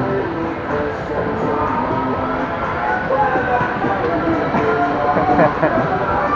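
Electric bumper cars running across the rink floor, a steady rolling noise, mixed with background music and voices.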